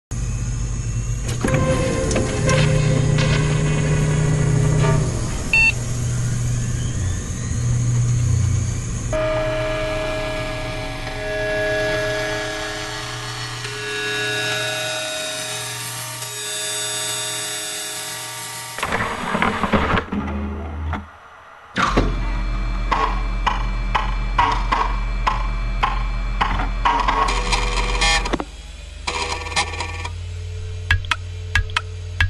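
Cinematic intro music with sound effects under an animated logo reveal. It opens with a low rumble and a falling sweep, moves into long held tones, drops out briefly about 21 seconds in, then comes back as a driving run of sharp, evenly spaced hits.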